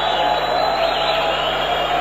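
Football stadium crowd: a steady din of many voices, without distinct cheers or breaks.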